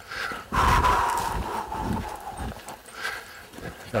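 Horse's hoofbeats as it is ridden in a small circle and brought back down to a trot, with a louder drawn-out sound from the horse about half a second in that slides slightly down in pitch.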